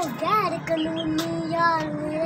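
A child singing: a short rising-and-falling note, then one long held note.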